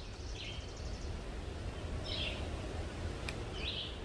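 A songbird calling in short chirpy phrases, about three times, roughly a second and a half apart, over a low steady rumble.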